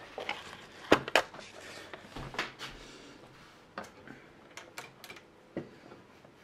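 Plastic LEGO bricks clicking and clacking as a section of a large brick build is handled and moved: a scatter of sharp clicks, the loudest about a second in, with a run of lighter ones near the end.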